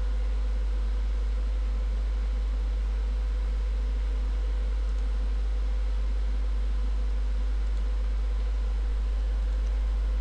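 A steady low hum with a faint hiss over it. It stays unchanged throughout, with no other sounds.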